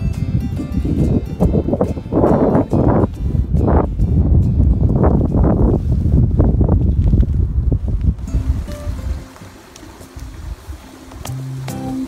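Wind buffeting the microphone in loud, uneven gusts, dying down about nine seconds in. Acoustic guitar music comes back in near the end.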